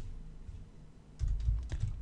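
Computer keyboard keystrokes: a quick run of taps starting a little past halfway, after a quieter first half.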